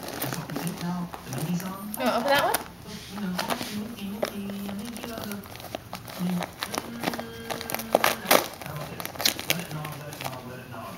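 Christmas wrapping paper crinkling and tearing as chihuahuas paw and bite at a wrapped present: a run of irregular sharp crackles and rips, loudest about eight seconds in.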